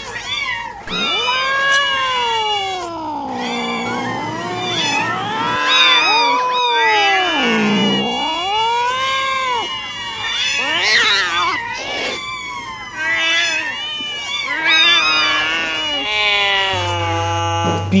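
A voice-like sound slides up and down in pitch in long swoops, sometimes with a fast wobble, and carries on without a break.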